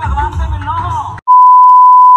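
Lively hand-drum music with voices stops abruptly a little over a second in. It gives way to a very loud, steady electronic beep at a single high pitch, a tone added in editing.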